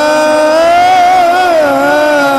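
A man's voice chanting one long, drawn-out melismatic note in the style of a naat, wavering in pitch and dipping down about a second and a half in.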